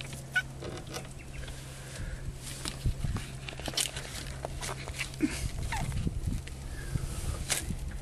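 Handling noise from a whiting being laid and held on a plastic measuring mat: scattered knocks, clicks and rustles, with a few short squeaks, over a steady low hum.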